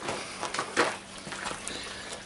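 Knife cutting through a desert fig, a prickly pear fruit held in metal tongs: one short scraping cut a little under a second in, over faint steady background noise.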